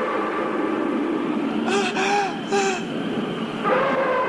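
A high-pitched voice giving three short rising-and-falling cries about two seconds in, over a steady hiss.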